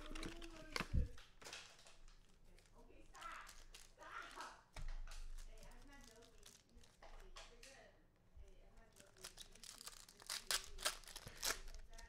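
Foil trading-card packs of 2020 Panini Prizm Quick Pitch baseball crinkling and tearing open, faint for most of the time with sharper crinkling in the last couple of seconds.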